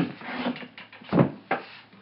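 A few sharp knocks and a heavier thump a little after a second in, the loudest sound here.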